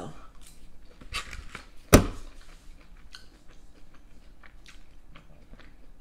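A person chewing and biting soft, cheesy tater tots, with small wet mouth clicks throughout and one sharp, loud click about two seconds in.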